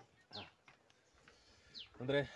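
Near silence broken by one short goat bleat about a third of a second in, and a brief high falling chirp near the end.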